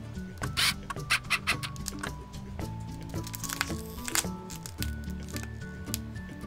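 Background music, with a clear cellophane bag crinkling and crackling as it is handled. The crackles come in a cluster from about half a second to a second and a half in, and again near four seconds.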